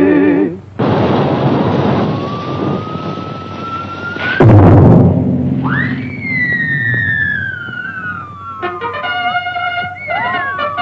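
Cartoon sound effects: a rushing noise with a slowly rising whistle, a loud crash about four and a half seconds in, then a siren-like tone that shoots up and slowly falls away. Band music comes back in near the end.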